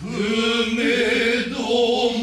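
Noh chorus (jiutai) chanting utai in unison, several voices holding long, wavering notes. The chant picks up again right at the start after a brief breath pause.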